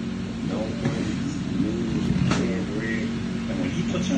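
Muffled, indistinct speech over a steady low hum, with a single sharp click a little over two seconds in.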